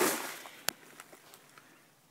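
A brief rustle that fades over about half a second, then a single sharp click, then faint room tone.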